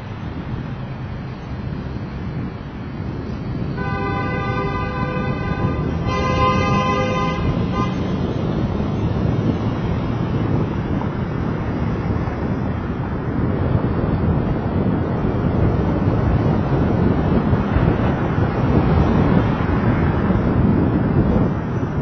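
A horn sounds twice, each blast about a second long, a little over a second apart, about four seconds in. Under it runs the steady rush of wind on the microphone and road and traffic noise from riding along a city street, slowly growing louder.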